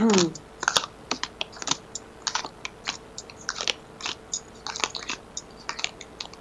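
Tarot cards being shuffled and handled, a run of irregular soft snaps and taps, a few a second. A brief falling hum of a voice comes right at the start.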